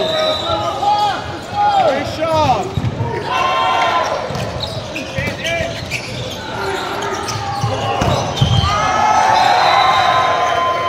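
Indoor volleyball rally in a large, echoing sports hall: the ball being struck and thudding, with a heavy hit about eight and a half seconds in, over players shouting and calling to each other, the voices growing louder near the end as the point is won.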